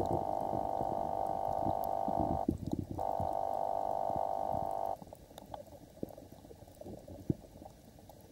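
Muffled underwater sound picked up by a waterproof camera while submerged. A steady hum runs for the first five seconds, with a half-second break just before the middle, then stops suddenly. After that only faint scattered clicks and crackles remain.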